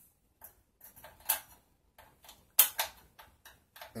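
Scattered small clicks and taps of wire leads and alligator clips being handled and set against a battery bank's bolted terminals and copper busbars, the loudest about two and a half seconds in.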